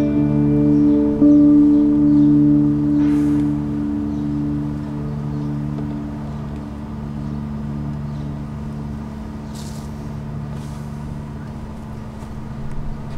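Acoustic and electric guitars letting a closing chord ring out, with one more note struck about a second in; the held tones fade slowly away.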